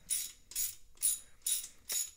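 Hand ratchet clicking in short bursts, about two strokes a second, as it turns down the nut of a special tool that compresses the VarioCam solenoid assembly.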